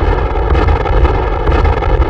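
Loud, steady rumbling noise, heaviest in the deep bass, with a faint held tone running through it.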